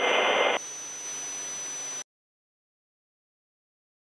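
Helicopter cabin noise: about half a second of loud hiss on the crew intercom, then steadier, quieter engine and rotor noise with a steady high whine, cut off abruptly to silence about two seconds in.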